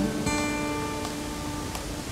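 Acoustic guitar: a chord is strummed about a quarter second in and left to ring, fading slowly.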